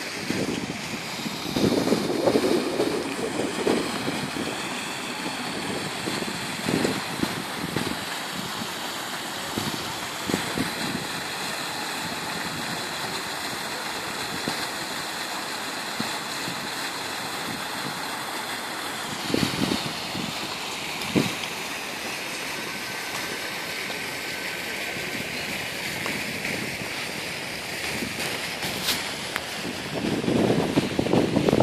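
Steady outdoor background noise with irregular rumbling gusts of wind on the microphone, strongest in the first few seconds and again about twenty seconds in.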